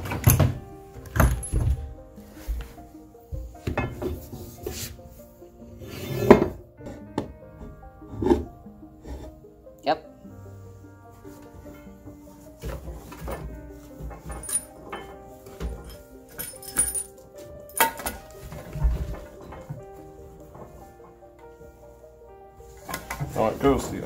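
Irregular wooden knocks and thunks as the parts of a vintage wooden floor loom are handled and fitted, the loudest about six seconds in, over background music.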